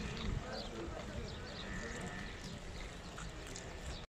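Livestock-market background with distant voices and a flock of Sardi sheep, with some faint bleating.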